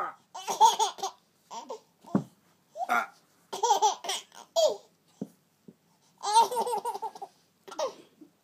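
Baby laughing in repeated bursts, each a run of quick chuckles, with short breaks between them.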